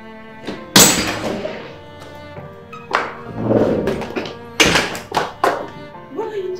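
Soft background music with a handful of sharp thuds over it. The loudest comes about a second in and fades slowly, and three quick thuds follow near the end.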